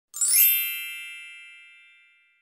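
A single bright chime sound effect for the channel's logo card, struck just after the start and ringing out, fading away over about a second and a half.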